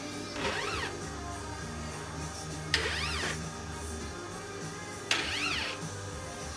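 Stepper motor of an SMT tape feeder making three short indexing moves about two and a half seconds apart. Each move is a brief whine that rises in pitch and falls again as the motor speeds up and slows down, and the later two start with a click. Music plays underneath.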